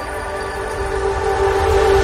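Closing held synth chord of an electronic dance track: several steady tones sounding together, with a low rumble swelling near the end.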